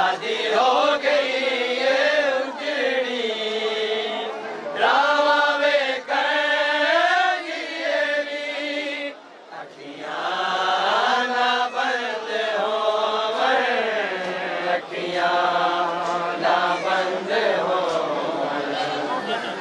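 Voices chanting a noha, a Shia mourning lament, in long wavering held notes, with a brief break about nine seconds in.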